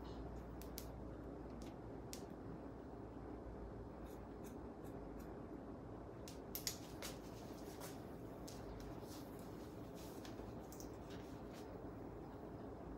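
Haircutting shears snipping the ends of long straight hair in a trim: a scatter of faint short snips, the loudest cluster about six and a half seconds in, over a low steady room hum.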